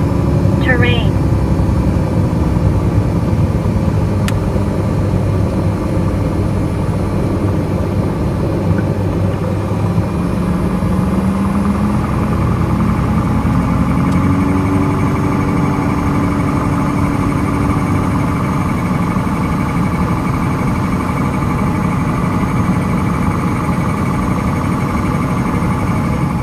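Single-engine airplane's engine and propeller running steadily during the landing rollout, heard from inside the cockpit, with wind and rolling noise. One tone in the engine sound rises in pitch between about ten and fifteen seconds in.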